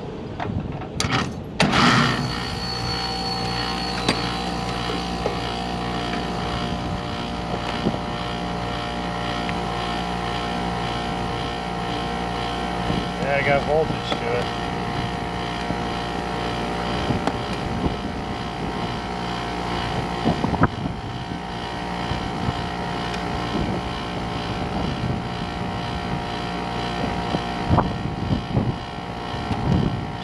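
A click about a second in, then the Liebert rooftop condensing unit starts and runs with a steady electrical-mechanical hum. Its condenser fan motor draws no amps on the clamp meter, and the technician takes the motor for shot.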